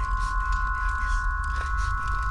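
Eerie horror background score: a sustained high ringing tone, like a bowl or tuning fork, held steady over a low rumble.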